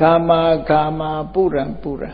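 A Buddhist monk chanting Pali verse in a level, sung intonation. He holds two long notes on one pitch, then drops into a falling phrase that breaks off just before the end.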